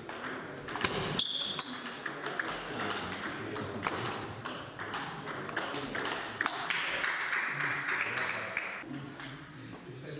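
Table tennis rallies: the ball clicking sharply off the bats and bouncing on the table in quick back-and-forth exchanges, two points played through.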